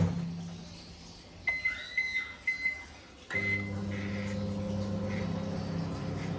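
IFB 17PG2S microwave oven being set: a few short keypad beeps, then a longer start beep about three seconds in, after which the oven starts running with a steady low hum.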